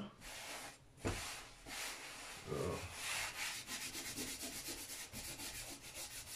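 Hands kneading and pushing cookie dough across a floured wooden board, a dry rubbing sound. There is a knock on the board about a second in, and a quick run of short rubbing strokes in the second half.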